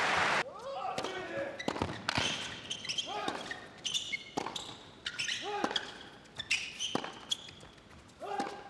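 Tennis rally on an indoor hard court: racquet strikes and ball bounces about once a second, with shoe squeaks on the court and short grunts from the players. A crowd's noise cuts off about half a second in.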